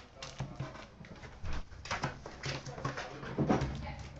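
Foil-wrapped trading card packs and their cardboard box being handled: rustling and light knocks as packs are pulled out and stacked on a glass counter. A short pitched whine comes about three and a half seconds in.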